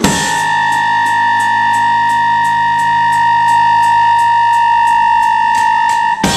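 Electronic keyboard holding one sustained chord, with a cymbal ticking lightly and evenly about four times a second over it: a keyboard-and-drums punk duo playing live.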